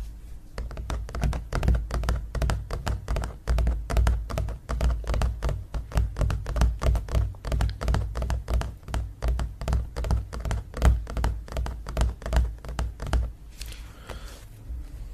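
Fingertips tapping on a stretched canvas print close to the microphone: quick, uneven taps, several a second, each with a low thud, stopping about a second before the end.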